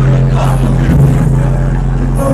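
Hip hop track playing loud over a club sound system, with a deep bass note held steady under it.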